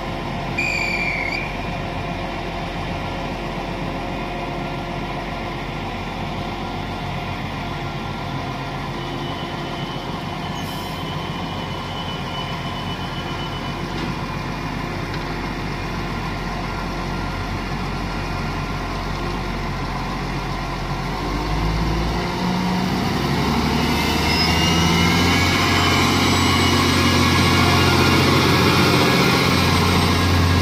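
Class 711 diesel multiple unit idling at the platform with a steady engine hum. About two-thirds of the way in the engine note rises and grows louder as the train pulls away, with a whine climbing in pitch over a few seconds and then holding. A short high tone sounds about a second in.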